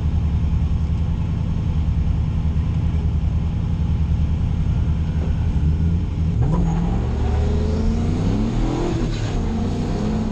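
Nissan 240SX drift car's engine running at a steady pitch while waiting to launch, then revving up as the car accelerates away about six and a half seconds in, with an upshift near nine seconds and the revs climbing again, heard from inside the cabin.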